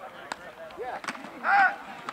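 Shouted calls from players at the line of scrimmage as the quarterback calls for the snap of an American football play. The loudest is a short call about one and a half seconds in, after two sharp knocks.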